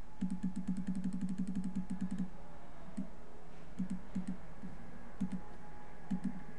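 Computer mouse clicking: a quick, even run of about ten clicks a second for some two seconds while scrolling through a file list, then a few scattered single and double clicks as a file is selected.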